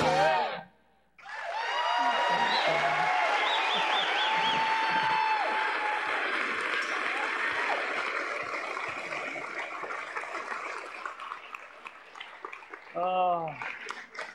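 Audience cheering and applauding, with scattered whoops and shouts over the clapping, starting a second in right after a sung phrase cuts off and slowly dying away over about ten seconds.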